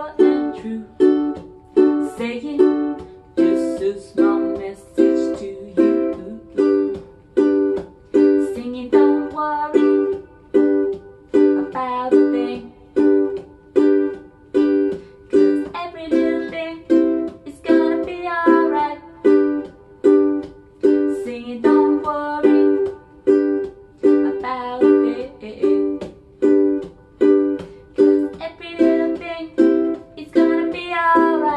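Ukulele strummed in a choppy reggae rhythm: short clipped chords a little more than once a second, each dying away quickly. A woman's voice sings along in stretches.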